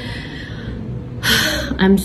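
A woman's audible breathing between phrases: a soft breath, then a sharp gasping intake of breath about a second in, just before she speaks again.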